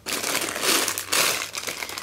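Packaging crinkling and rustling as makeup items are handled and rummaged through: a continuous, uneven crackle.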